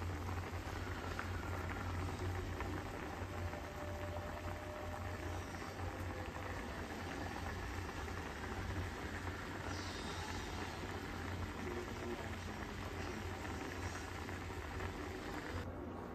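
Thick rosé tteokbokki sauce bubbling and popping steadily in a pan as it simmers, over a low steady hum.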